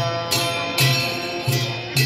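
Traditional Newar dance music: a hand-beaten drum and clashing hand cymbals in a steady beat, the cymbals ringing on between strokes.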